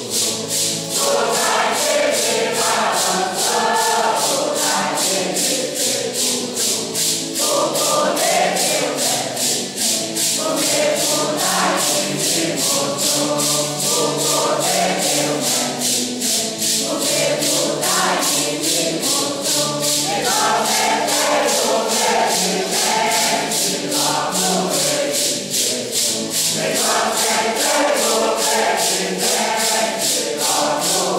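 A congregation of men and women singing a Santo Daime hymn together, with maracas shaken on a steady beat of about three strokes a second.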